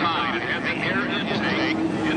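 The turbine engine of an Unlimited hydroplane running steadily at speed on the water, heard under people talking close by.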